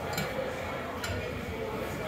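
Ice rink arena background: indistinct chatter from players and spectators with a few faint knocks.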